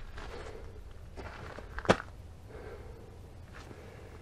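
Quiet rustling and shuffling from a person moving about and handling a pop-up screen shelter, with one sharp click about two seconds in.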